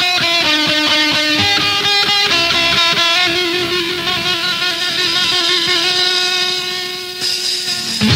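Electric guitar playing a hardcore punk riff on a lo-fi cassette demo recording, its notes changing about every half second with little bass or drums beneath.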